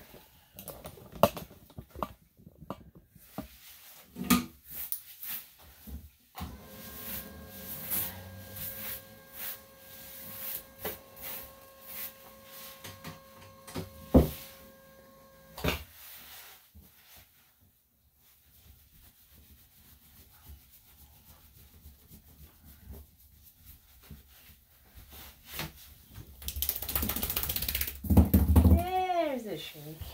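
Electric dog clippers humming steadily for about nine seconds, then switched off with a click, among scattered knocks and handling sounds. Near the end comes a short loud rush of noise and a brief rising-and-falling voice-like call.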